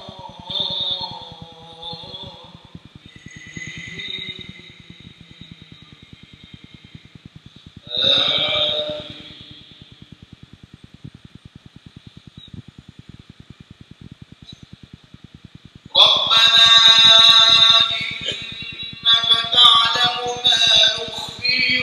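Man's voice chanting Quran recitation aloud in slow melodic phrases through a mosque's sound system, with a strong echo of the hall: a phrase dies away just after the start, a short phrase comes about 8 seconds in, and a long loud phrase begins about 16 seconds in, with quiet pauses between. A faint rapid regular ticking runs underneath.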